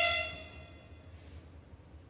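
The final fortissimo held note of an alto flute, horn and string orchestra ensemble is cut off at the very start, and its reverberation dies away within about half a second. After that only a faint low hum remains.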